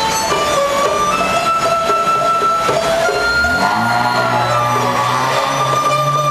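Chinese bamboo flute (dizi) playing a slow melody of long held notes that step upward in pitch, over a plucked-string accompaniment. A lower sustained tone joins a little past halfway.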